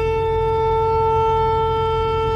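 Alto saxophone holding one long, steady note, over a low background hum.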